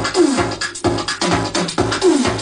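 Electro house music mixed live from CDJ decks, a steady driving beat under a repeating synth riff whose notes slide downward in pitch.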